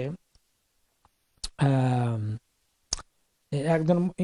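A man's lecturing voice pausing: two sharp mouth clicks frame a single held hesitation sound of under a second at a steady pitch, and then speech resumes near the end.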